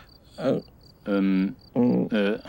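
Crickets chirping, a short high chirp repeating about three times a second, under brief bursts of a voice, one syllable held for about half a second.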